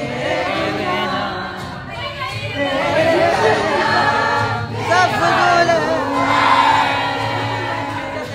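A roomful of people singing a song together as a group singalong, many voices at once over a steady low accompaniment.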